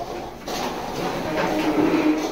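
Indistinct background sounds of young children in a classroom: faint voices and movement, with no clear words.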